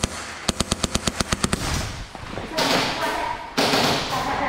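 Airsoft rifle firing a rapid burst, about ten sharp shots a second for roughly a second. About two and a half seconds in, a louder rushing noise with faint voice-like tones follows.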